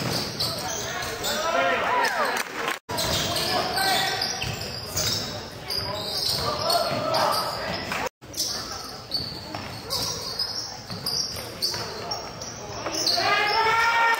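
Basketball game in play on a hardwood gym floor: a ball dribbling and sneakers squeaking, with voices echoing around the large gym. The sound drops out abruptly for a moment twice.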